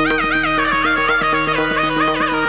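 Electronic keyboard playing a kirtan tune: an ornamented melody with quick trills, stepping up and down over steady held drone notes, with a fast even beat of about seven strikes a second underneath.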